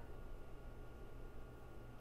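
Quiet room tone: a faint, steady low hum with no distinct sound.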